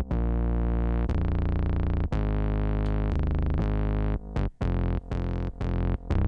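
Synth bass preset ('Soft Thumper') playing a looping bassline on an Akai MPC One+, run through soft AIR Distortion with the high end rolled off. The low notes are held and change pitch about once a second, then turn shorter and choppier in the last two seconds.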